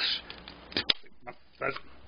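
Knife cutting the plastic tie that holds a roller massager to its cardboard card and the massager being pulled free: short rustles and clicks, with one sharp snap just under a second in.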